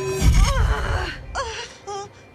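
A woman groaning and moaning in pain in a few short, falling moans, just after a deep low thump a quarter second in.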